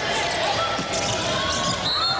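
Arena crowd noise from a volleyball match, a dense steady hubbub of many voices, with scattered low thumps from the rally.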